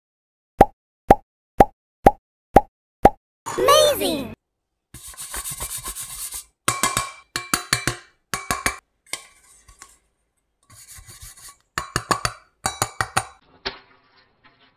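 Six quick pitched pops in a row, about two a second, then a short warbling, gliding sound effect. After that come irregular rubbing, scraping and knocking from hands handling a metal six-cup muffin tin.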